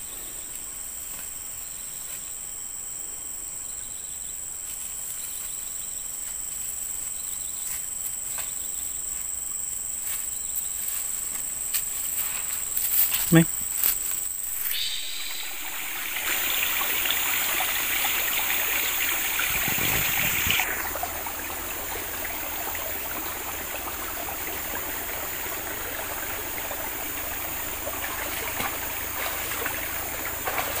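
Outdoor ambience of insects in a grassy rice field, a steady high-pitched drone in the first half. Halfway through come a few sharp clicks and a brief short sound, then a louder, even rushing noise that eases off a few seconds later.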